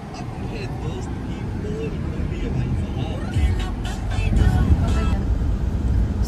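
Car driving in city traffic, heard from inside the cabin: a steady low rumble of engine and road noise that grows gradually louder, with faint voices or music in the background.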